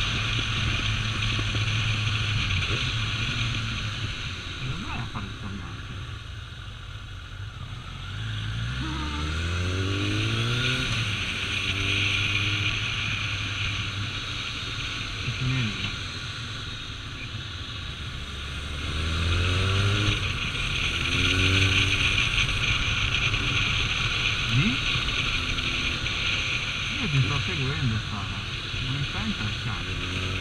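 Kawasaki ZRX1200 inline-four motorcycle engine under way with wind noise on the microphone. The engine note climbs in steps as it accelerates through the gears, about eight seconds in and again near twenty seconds.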